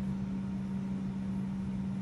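A steady low hum on one unchanging tone, over a faint even hiss.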